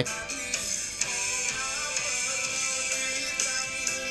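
A song playing from a smartphone's speaker, thin with little bass, held behind a Maono AU-PM500 condenser microphone: the music reaches the mic from the rear of its cardioid pickup pattern.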